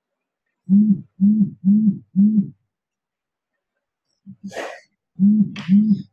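A person's voice making short wordless syllables at one steady pitch: four in a row at about two a second, a breath, then two more.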